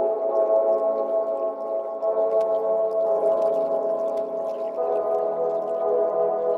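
Background ambient music: held synthesizer chords that shift about two seconds in and again near the end.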